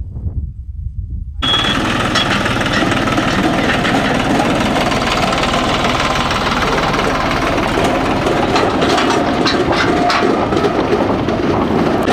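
New Holland diesel tractor engine, at first only a low rumble, then suddenly much louder about a second and a half in as the tractor pulls a loaded trailer: a steady engine drone with rattling and scattered clicks from the trailer and its metal milk cans toward the end.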